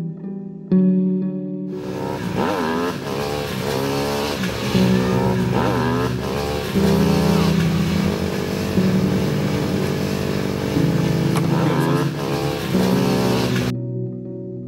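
Background music with sustained low notes; about two seconds in, motorcycle engines come in over it, revving up and down again and again, then cut off suddenly just before the end.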